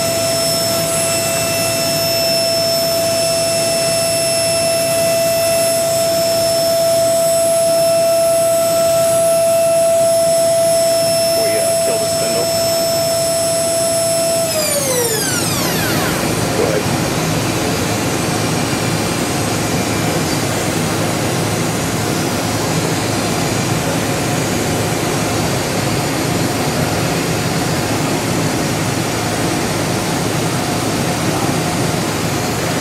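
Makino V22 machining-center spindle spinning at 40,000 rpm, a steady high whine that stops about halfway through as the spindle spins down, its pitch falling quickly over a second or so. A steady wash of machine noise carries on after the whine is gone.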